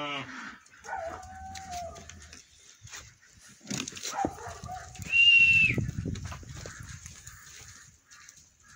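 Sheep in a crowded flock bleating: one bleat tails off just as it starts, then shorter, bending calls about a second in and again around four seconds. The loudest sound is a high, steady whistle-like call of about half a second a little after five seconds, with low rustling and shuffling of the animals beneath it.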